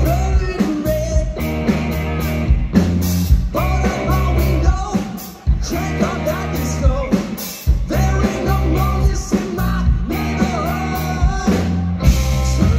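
A rock band playing live: electric guitars and drums, with a man singing lead at the microphone.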